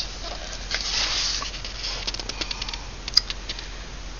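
Paper pages of a hardcover book being turned and handled, rustling, with a run of small clicks and one sharper tick a little after three seconds in.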